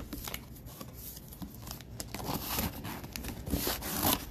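A sealed trading-card box being opened by hand: wrap and tape tearing and packaging crinkling, with scattered small clicks and scrapes.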